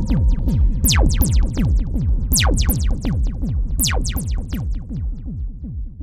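Electronic music: a dense stream of rapidly falling synthesizer pitch sweeps over a low bass bed, fading out steadily.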